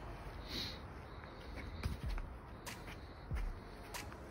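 A few soft thumps and sharp clicks of a football being touched and dribbled, with footsteps on grass.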